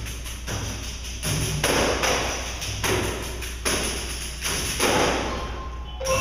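A section of pandeiros (Brazilian frame drums with jingles) played together without the mallet instruments: repeated bursts of jingle rattle, about one a second, over low thuds from the drumheads.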